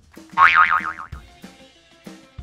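Background music with a regular beat. About half a second in, a loud comic sound effect plays, its pitch wobbling rapidly up and down for about half a second.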